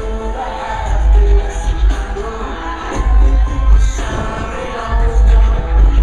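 Loud amplified live pop concert music with a singing voice, heard from within the audience, with heavy bass that pulses in strong surges.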